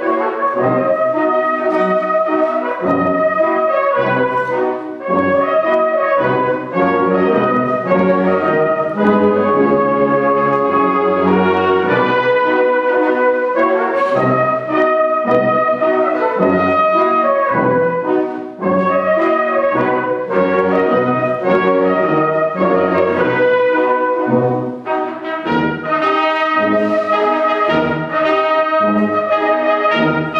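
Concert wind band playing, with a solo trumpet carrying the melody over brass and woodwind accompaniment in sustained, legato phrases.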